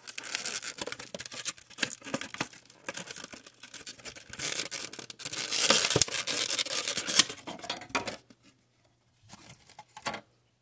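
Clear plastic blister insert of a Pokémon card tin being handled and pulled out, crinkling and crackling with many small clicks. It is loudest around the middle and dies away after about eight seconds, with one short crackle near the end.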